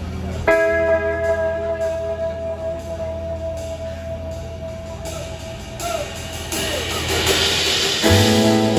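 Electric guitar chord struck about half a second in and left ringing, slowly fading over several seconds, with a bell-like tone. Near the end a cymbal wash swells up as the song's intro builds.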